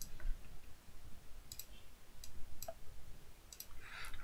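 About five sharp, faint clicks, scattered unevenly, from a computer input device being worked while editing on screen.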